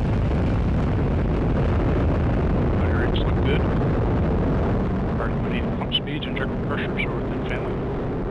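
Atlas V rocket at liftoff, its RD-180 first-stage engine and single solid rocket booster firing: a loud, steady, deep rumble.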